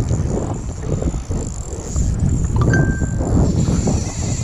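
Spinning reel being cranked against a hooked fish, with irregular clicks and knocks from the reel and rod handling over a steady rumble of wind on the microphone. A brief high squeak comes a little under three seconds in.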